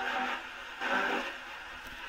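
Portable radio swept across stations as a spirit box: two short bursts of static and broken broadcast sound, one at the start and one about a second in.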